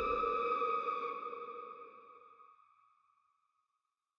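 A held, ringing synthetic tone with overtones, the closing sting of a horror film trailer, fading away over about two and a half seconds.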